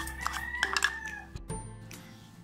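A rooster crowing in the background: one long held crow of about a second and a half, with a few light clicks over it.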